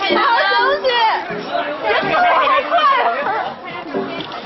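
Overlapping chatter: several voices talking and calling out over one another, with no break.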